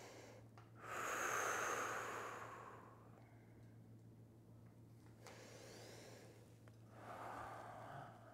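A man breathing audibly in a slow, deliberate archery breath cycle: one long breath from about a second in, lasting about two seconds, then two fainter breaths later on.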